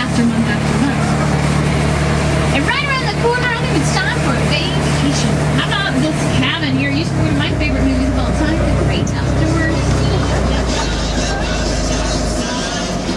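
Studio tour tram running under way with a steady low engine sound that drops in pitch about two-thirds of the way through, with indistinct voices of people on board over it.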